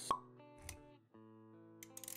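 A short pop sound effect just after the start, over soft background music of sustained notes. A low thud follows a little later, and the music briefly drops out about a second in before resuming.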